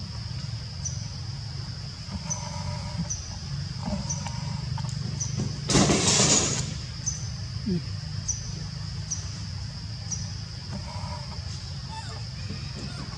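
Outdoor background sound: a steady low rumble under a steady high-pitched whine with short chirps about once a second, and a loud rushing noise lasting about a second midway through.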